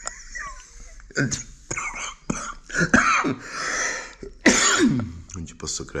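A man coughing several times, with a few spoken words in between.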